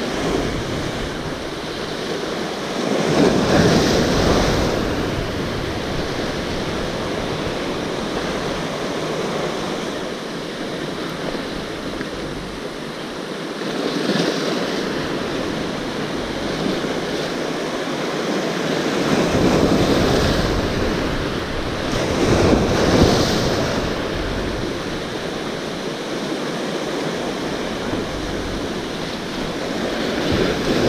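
Sea waves washing against a rocky shore in a steady surf, swelling louder several times as waves break, with wind buffeting the microphone.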